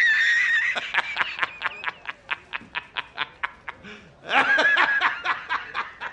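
A man laughing hard. A long high-pitched squeal breaks into rapid bursts of laughter, about five a second, and a second high squeal comes about four seconds in before the bursts start again.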